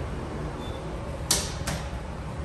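Steady low rumble inside a hydraulic elevator cab, with two sharp clicks a little under half a second apart about two-thirds of the way through.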